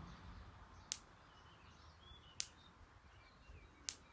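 Quiet rural outdoor background with faint bird chirps. It is broken by three sharp, short clicks at an even beat, about a second and a half apart.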